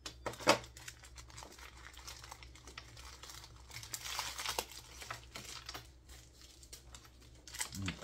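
White packaging wrap being pulled off and crumpled by hand, a run of crackling and crinkling that is densest about four seconds in. There is one sharp knock about half a second in as the charger is set down.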